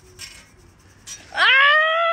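A woman's voice sweeping up into a long, loud, high-pitched held cry about a second and a half in, after a few faint rustles and clicks.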